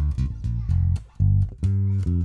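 Fazley Mammoth seven-string active bass guitar, plugged straight into an audio interface, playing a run of about six separate plucked low notes with the bass boosted on its active EQ. The tone is tubby and bass-heavy.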